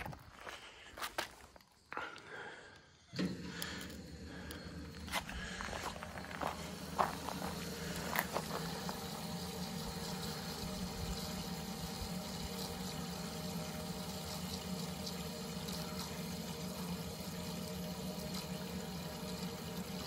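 Electric fuel pump in a boat fuel tank switched on about three seconds in, then running with a steady hum while fuel churns and splashes in the tank. The return flow is driving a home-built venturi jet pump that transfers fuel from the tank's front well into the pump's reservoir. A few faint clicks and knocks come before it starts.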